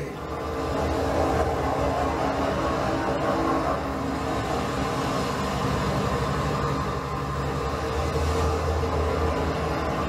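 Steady rumble of a vehicle running, continuous and unbroken, with a slight dip about seven seconds in.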